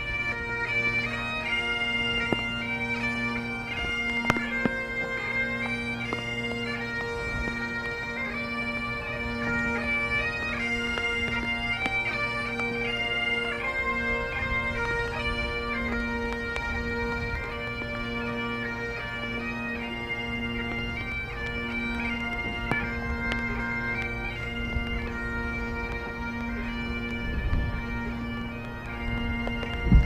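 A band of Highland bagpipes playing a slow lament: steady drones underneath, with the chanter melody moving step by step above them.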